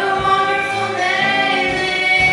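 A group of young female singers singing a worship song in harmony through microphones, holding long notes, with acoustic guitar accompaniment.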